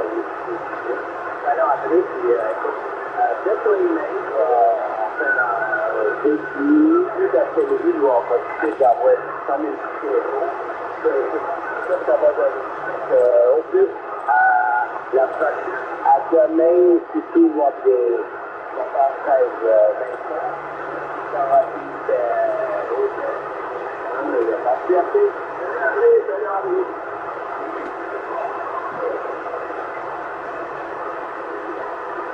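Voice of a distant station coming through a Yaesu FT-450 transceiver's speaker on upper sideband in the 27 MHz CB band: thin, narrow-band speech over a steady bed of receiver hiss. The voice stops near the end, leaving only the hiss.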